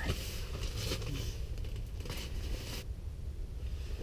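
Rustling and crinkling handling noises as an angler brings a small bluegill up through the ice hole, over a steady low rumble. A couple of brief scrapes are heard a little past halfway.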